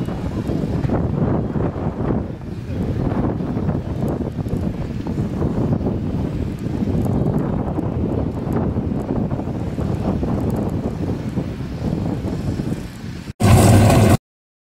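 Wind buffeting the microphone over the low rumble of cars on the drag strip, steady throughout. Near the end a short, loud blast of a car engine cuts in and stops abruptly.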